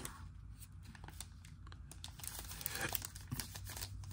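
Sealed foil trading-card packs faintly crinkling and rustling as they are handled and shuffled by hand.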